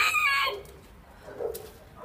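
Rooster crowing; the long crow ends about half a second in, leaving a quieter stretch with a few faint sounds.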